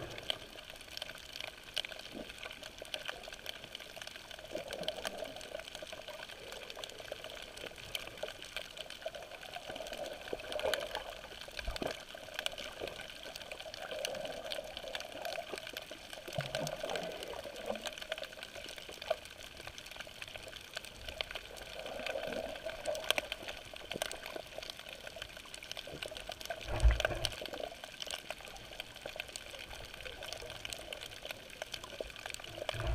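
Underwater sound picked up by a submerged camera over a coral reef: a steady wash of water with many small crackling clicks and a soft swell every few seconds. A dull thump about three seconds before the end is the loudest sound.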